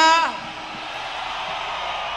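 Arena crowd shouting and cheering steadily in answer to the singer's call for a shout. At the very start the singer's held last word falls in pitch and trails off.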